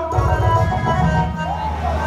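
Live band music over loudspeakers: a keyboard holds steady chords over a low drum and bass rumble, with a brief sliding tone about one and a half seconds in.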